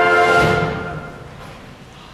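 Pit orchestra holding a loud brass chord that ends on a final accented hit about half a second in, then rings away to quiet within a second: the close of a musical number.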